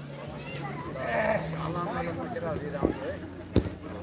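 Men's voices talking nearby over a low steady hum, with a single sharp knock about three and a half seconds in.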